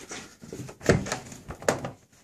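A few clunks and rustles as someone climbs into a 1998 Jeep Cherokee's driver's seat, handling the door; the engine is not yet running.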